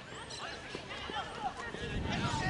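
Distant shouts and calls from field hockey players and spectators, overlapping, with a couple of sharp knocks about a second in.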